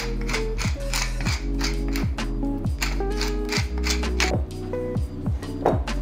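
Wooden pepper mill being twisted to grind peppercorns, a dry ratcheting grind, over background music with a steady bass line and beat.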